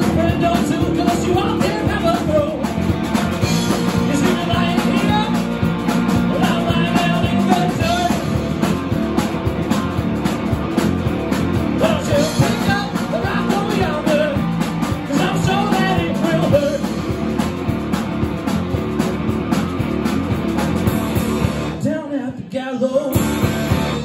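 Live rock band playing loudly: electric guitars, bass and drum kit in a continuous stretch of the song. Near the end the band briefly stops, then comes back in.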